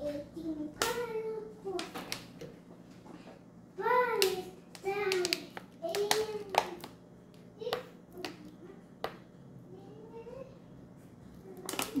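A small child's voice making about half a dozen short, high-pitched vocal sounds, with light clicks and taps of kitchen items being handled in between.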